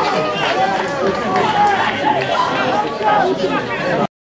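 A small football crowd chattering and calling out, many voices overlapping, with no one voice standing out.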